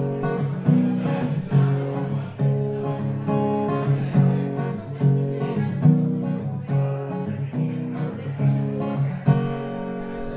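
Solo acoustic guitar strummed in a steady rhythm, moving through a run of chords as an instrumental introduction to a song.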